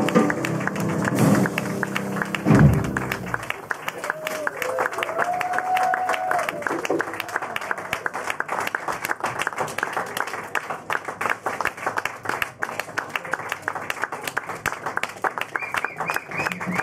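A live jazz band plays its closing notes for the first three seconds or so, then an audience applauds steadily. One voice calls out soon after the clapping starts.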